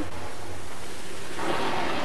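A jet of water blasting from the nozzle of a compressed-air-driven water-jet trolley: a steady, loud rushing hiss as the compressed air drives the water out, the same reaction principle as a rocket.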